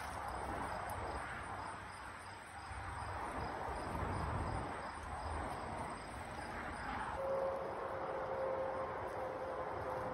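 Insects chirping in a faint, even, repeating pulse over a low outdoor rumble. About seven seconds in, a steady hum comes in and holds.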